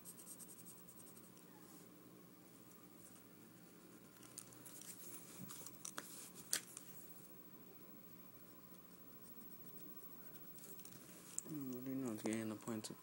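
Faint scratching of a pencil drawing on paper near the start, then mostly quiet with a few light clicks and rustles around the middle, over a low steady hum.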